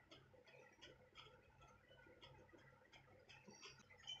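Near silence: room tone with faint, irregular small clicks.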